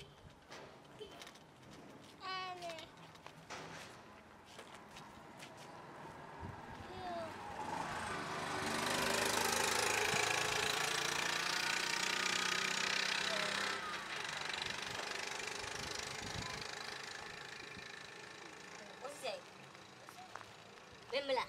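A motor vehicle passing on the road: engine and tyre noise build from about six seconds in, stay loud for several seconds, then fade away.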